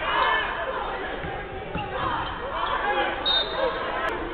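A basketball dribbling on a hardwood court in a large, echoing arena, under a broadcast commentator's laugh and talk.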